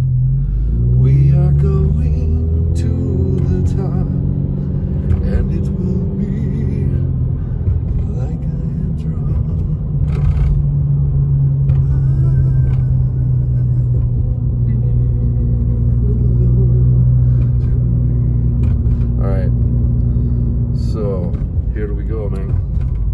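Car engine and road noise heard from inside the cabin while driving; the engine note climbs over the first few seconds and then holds a steady low drone.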